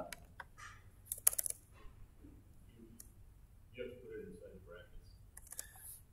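Computer keyboard and mouse clicks: a quick cluster of sharp clicks about a second in, then a few scattered ones. A brief low murmur of a voice comes partway through.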